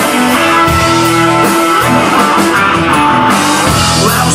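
Live southern rock band playing an instrumental passage: electric guitars holding sustained notes over a steady drum kit beat.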